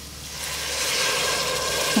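Half a glass of water poured into a pressure cooker over sautéed cluster beans and spices, splashing into the pan. The pour starts about half a second in and grows louder.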